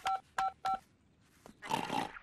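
Three short two-tone keypad beeps of a mobile phone being dialled, about a third of a second apart. A brief burst of noise follows near the end.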